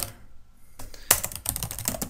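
Typing on a computer keyboard: a near-quiet moment, then a quick run of key clicks from about a second in.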